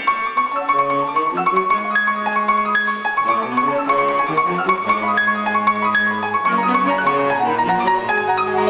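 Live instrumental ensemble music: held chords over a moving bass line, with a high note repeated on top.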